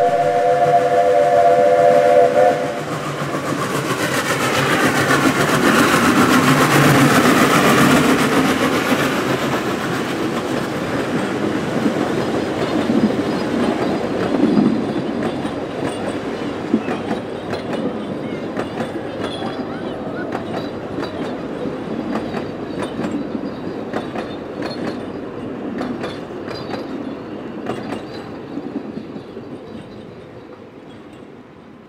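Narrow-gauge NGG16 Garratt steam locomotive sounding its several-note whistle for about two and a half seconds, then running close past, loudest a few seconds later. Its carriages follow, clicking over the rail joints, and the sound fades steadily away.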